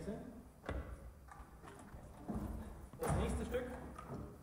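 Indistinct talking with a few low thumps.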